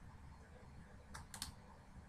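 Near-silent room tone with three faint, quick clicks a little past a second in.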